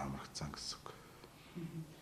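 A man's voice speaking softly: the tail of a sentence with hissy consonants, a quiet pause, then one short spoken syllable near the end.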